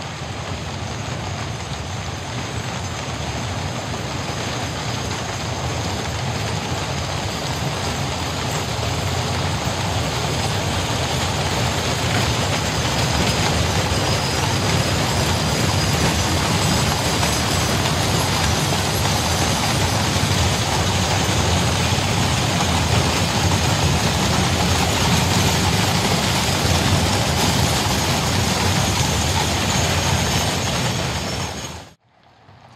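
Many horses' hooves clattering and the wheels of horse-drawn gun carriages and limbers rumbling on a wet road, a dense, continuous clatter. It grows louder over the first half as the column comes past, then holds.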